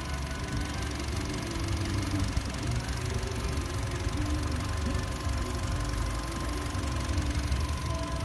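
Honda Brio's 1.2-litre i-VTEC four-cylinder engine idling steadily with the bonnet open, a low even rumble.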